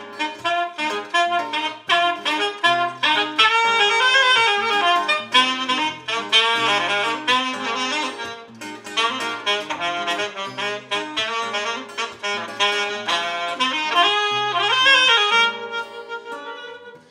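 Saxophone solo over strummed acoustic guitar, the sax playing a moving melody that climbs in a rising run near the end.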